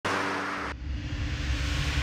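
Cartoon car sound effect: a short rushing whoosh that cuts off under a second in, then a low engine rumble that swells.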